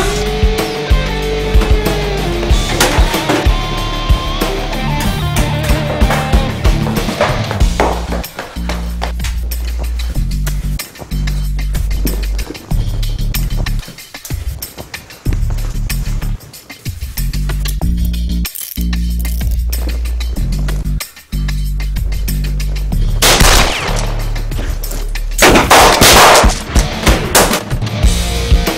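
Pistol gunfire in a shootout over rock music. Single shots crack throughout, then two dense volleys come near the end, the second the loudest.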